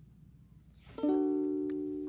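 Ukulele: after a second of near silence, one chord is strummed about a second in and left to ring, slowly fading.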